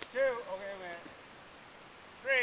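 A sharp click, then a voice calling out briefly with a drawn-out tail.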